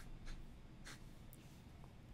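Fountain pen nib scratching faintly on paper in a few short strokes as a box is drawn.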